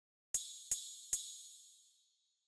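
A drum-machine percussion sample, 'MA MicroClash Planetary Perc', triggered three times about 0.4 s apart in FL Studio. Each hit is short and high-pitched and rings briefly.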